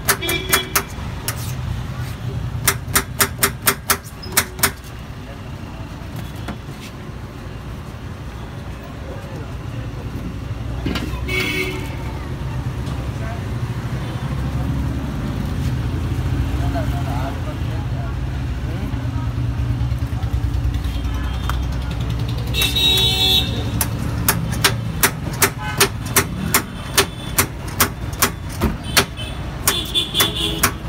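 Knife chopping onion and green capsicum on a steel counter: quick runs of sharp knocks, about four or five a second, in the first few seconds and again through the last six seconds. Between the runs, a steady low rumble of road traffic, with short vehicle-horn honks twice.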